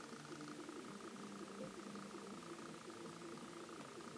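Quiet room tone: a faint, steady hum with no distinct event.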